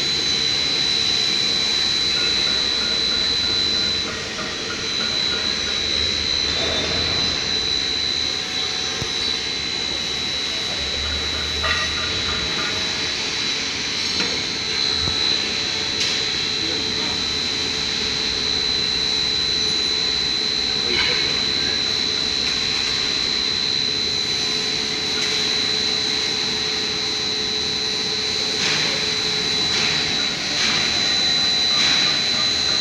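A 1300 mm hot foil slitter-rewinder running at speed, with foil strips feeding over its rollers. It makes a steady, continuous machine noise with a constant high-pitched whine over it.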